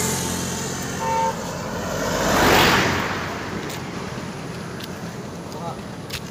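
A motor vehicle passing close by on the road: its noise swells to a peak a couple of seconds in and fades away. A short horn beep sounds about a second in.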